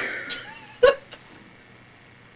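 A person's stifled laughter: two short, sharp bursts of breath, the second, a little under a second in, the louder.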